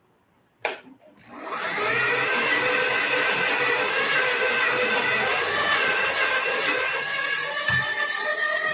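Electric stand mixer switched on about a second in, its motor spinning up and then running with a steady whine as it kneads pav bread dough that is not yet fully developed.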